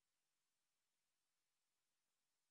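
Silence: the sound track is blank.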